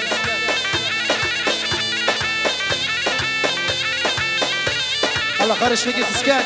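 Live band playing upbeat folk dance music: a steady, driving drum beat under a reedy, wavering lead melody on a wind-instrument-like sound.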